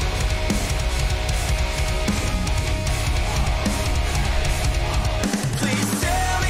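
A heavy rock band playing with electric guitars, bass and a drum kit. The low end drops out briefly near the end.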